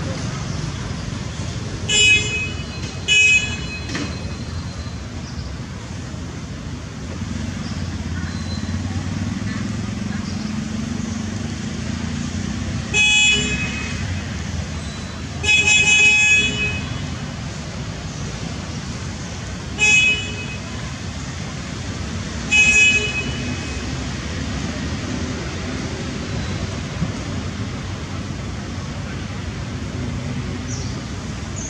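Vehicle horns tooting in six short blasts, the one in the middle a little longer, over a steady low rumble of road traffic.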